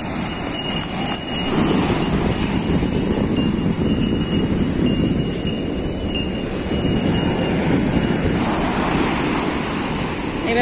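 Sea surf breaking and washing up over wet sand: a steady rush of water that swells and eases, with a faint high jingle of small bells behind it.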